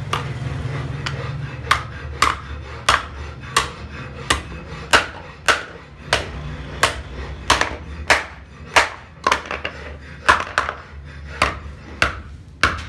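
Hand hammer striking a brick mold's parts on a steel block anvil: a steady low hum for the first couple of seconds, then a regular run of sharp blows, under two a second.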